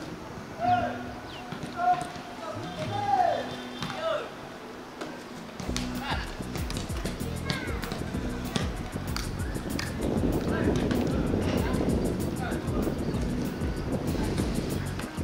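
Players' shouts and calls across a football training pitch. About six seconds in, background music with a regular beat comes in.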